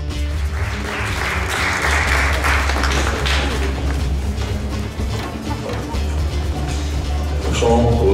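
Audience applause, strongest in the first half, over music with steady low notes. A man's voice begins near the end.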